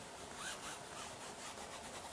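A brush scrubbing oil paint onto canvas, a faint dry rubbing in several short strokes.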